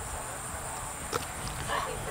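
Low, uneven rumble on the microphone, with one sharp click about a second in and a short pitched call near the end.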